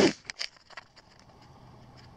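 The tail of a breathy laugh fading out, then a few faint clicks and rustles from the camera and hands being moved, then quiet woodland background.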